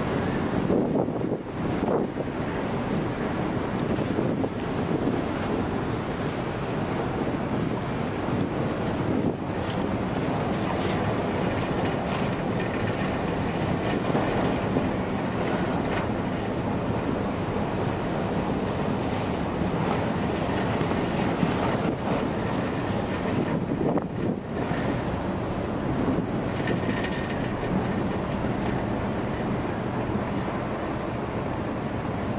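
Wind buffeting the microphone over a steady low rumble of ships moving through sea ice, with brief crackling now and then.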